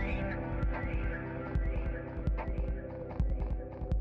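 Electric bass playing deep low notes with a heavy rock backing track: sharp drum and cymbal hits and a singing voice over it.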